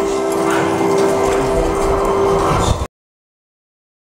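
Steady background noise with a held low tone, cut off suddenly just under three seconds in, followed by dead silence.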